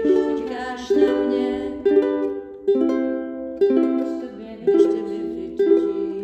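Background music: chords strummed on a plucked string instrument, a fresh strum about every second, each ringing out before the next.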